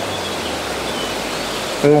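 Steady rush of running water, an even hiss with no rhythm, from the park's pond water features.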